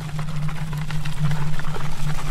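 A steady low hum under a rushing noise full of small crackles, growing slightly louder.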